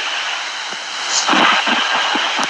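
Steady rushing noise on a recorded phone call line, with a louder swell about a second and a half in.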